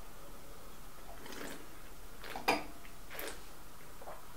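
Wine being sipped and tasted in the mouth, with faint slurping and breathing sounds, and a single sharp knock about halfway through as a wine glass is set down on a wooden table.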